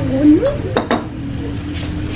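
A bowl set down on a wooden table, two quick knocks a little under a second in.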